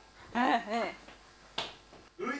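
A voice sings or babbles a short phrase with wavering pitch, then a single sharp click, like a finger snap, rings out about one and a half seconds in.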